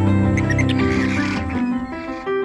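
Soundtrack music with sustained notes, and over it for about a second, starting a little way in, a screeching, chirping animal cry: the sound effect of the computer-generated raptor-like dinosaurs.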